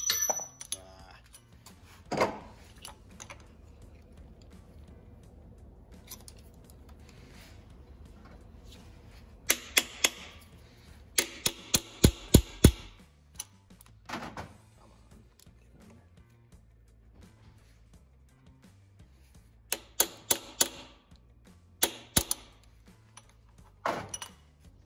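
Sharp metallic clicks and clinks of a steel two-jaw gear puller's jaws and hooks knocking against the crank gear and each other as they are set and adjusted by hand. There is a single knock early on, then clusters of several quick clicks about midway and again near the end.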